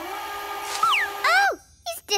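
Cartoon sound effect of a magical vanishing: a steady buzzing hum with a whistle falling in pitch about a second in, ending about a second and a half in.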